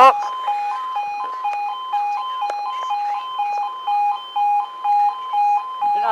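Railway level crossing audible warning: an electronic two-tone alarm switching steadily between a lower and a higher note a few times a second. It sounds while the barriers are down for an approaching train.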